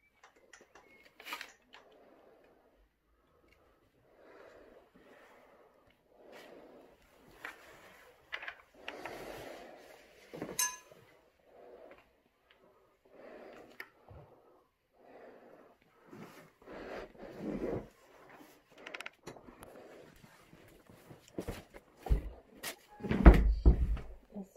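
Scattered quiet knocks, rustles and footsteps of people moving through debris-strewn rooms, with a couple of heavy thumps near the end.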